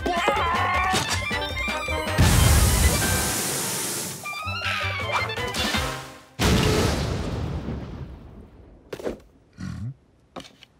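Cartoon score music with slapstick sound effects: a loud crash about two seconds in that fades over the next couple of seconds, then another loud burst just after six seconds that dies away, leaving near quiet.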